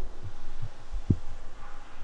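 A few soft, low thumps of handling noise as the hand-held camera is moved, with one slightly sharper knock about a second in, over a faint low hum.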